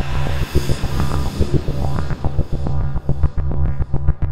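Electronic logo music with a fast, steady bass beat, under a whooshing sweep that fades out over the first three seconds.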